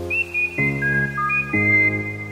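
Background music: a high, single-line melody moving in short steps over sustained chords that change about once a second.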